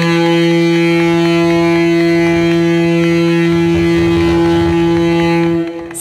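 A ship's horn sounding one long, steady blast that stops near the end. It is the departure signal of the aid ship being flagged off.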